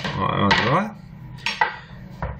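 Kitchen handling sounds: a sharp knock as a plastic cutting board is set down on the worktop, then a large plastic mixing bowl is moved on the counter, with a few short clicks about one and a half seconds in.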